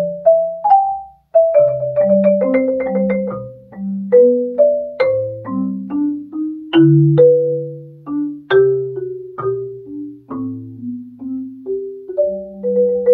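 Marimba played with four soft mallets: a melody of struck, ringing notes over lower notes that sound together with it, with a brief break a little over a second in.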